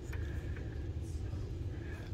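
Steady low rumble of indoor room noise, with a faint steady high tone and a few small clicks.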